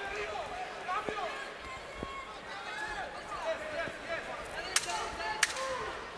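Boxing arena crowd noise with scattered shouts from around the ring, then three sharp smacks in the last second and a half.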